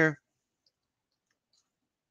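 A few faint, widely spaced keystrokes on a computer keyboard, about a second apart.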